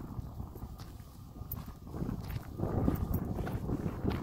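Footsteps on a path, a run of soft thuds, over a low rumble of wind on the microphone; they get louder about halfway through.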